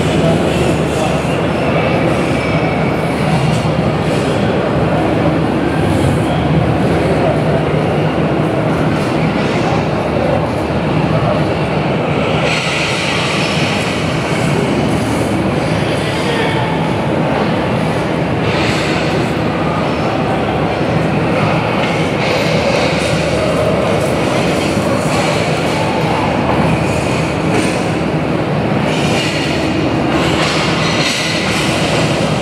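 A Pakistan Railways diesel train standing at the platform with its engine running: a steady hum under the noise of a busy station. A hiss comes and goes from about twelve seconds in.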